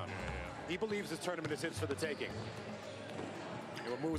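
A basketball being dribbled on a hardwood gym floor, several separate bounces, with faint voices and background music under it.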